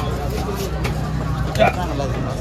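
Busy fish-market din: people talking over a steady low engine rumble, with scattered sharp clicks and knocks as a knife works a big trevally on a wooden block. A short loud call stands out about one and a half seconds in.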